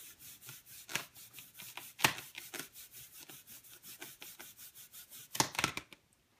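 An inflated rubber balloon rubbed quickly back and forth against a sweater, a run of short scratchy strokes about three or four a second, a few louder ones among them. The rubbing is charging the balloon with static electricity.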